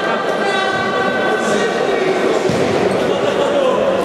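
Echoing sports-hall sound of an indoor futsal game: players' indistinct shouts and the ball being kicked and bouncing on the court. A steady held tone sounds over it and fades out about halfway through.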